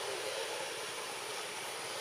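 Steady outdoor background noise, an even hiss with no distinct sound standing out; the grooming monkeys make no audible calls.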